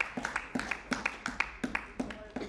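Scattered applause from part of a parliamentary chamber: separate hand claps, irregular and several a second, rather than a full, dense ovation.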